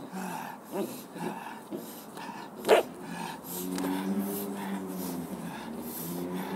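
A Belgian Malinois puppy vocalising while it tugs on a bite roll: a few short yips, then one sharp bark about three seconds in, the loudest sound, followed by a longer, lower drawn-out sound.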